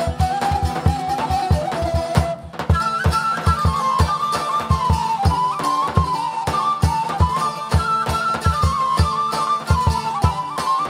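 Macedonian folk dance music: a melody instrument plays over a steady, quick beat. About two seconds in the tune breaks off briefly, then resumes at a higher pitch.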